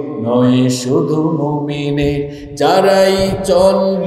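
A man singing a Bengali Islamic song, holding long, wavering notes, with a brief break a little past halfway.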